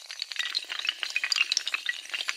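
A long chain of dominoes toppling: a dense, rapid clatter of many small hard clicks.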